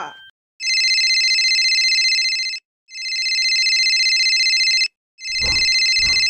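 Telephone ringing, an electronic trilling ring in three bursts of about two seconds each with short gaps between. Near the end a few low thuds sound under the third ring.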